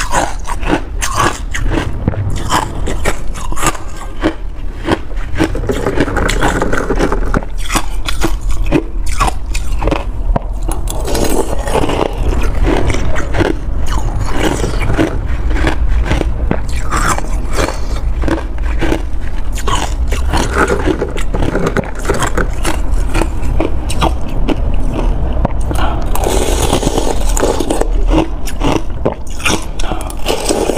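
Close-up crunching of hard ice chunks between the teeth and chewing, a rapid run of sharp cracks, with a metal spoon scooping ice from the container.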